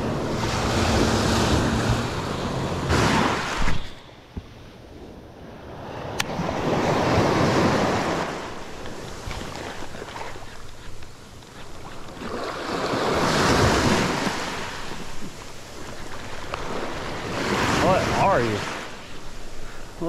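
Small waves breaking and washing up the sand at the water's edge of a calm beach, swelling and fading about every five seconds.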